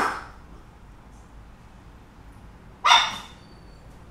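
Small dog barking: two short barks, one at the start and one about three seconds later.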